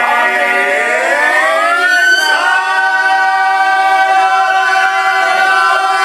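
A small group of amateur singers singing a cappella in a tenor style, sliding up in pitch together and then holding one long, loud final chord.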